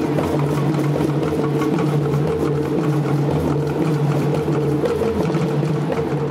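Live music with drumming, steady and rhythmic, accompanying a cultural dance, with a sustained low pitched tone running under the beats.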